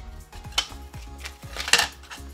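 A small picture frame being handled on a tabletop as its cardboard backing is taken off: two sharp clicks, the second, about three-quarters through, the louder. Steady background music runs underneath.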